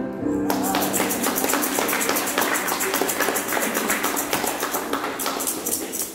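A congregation applauding with many hands clapping. It starts about half a second in, as a short group singing ends, and thins out near the end.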